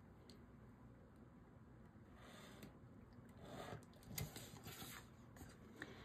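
Faint scratching of a pen drawing straight lines along a metal ruler on construction paper, in a couple of short strokes, with a light tap about four seconds in.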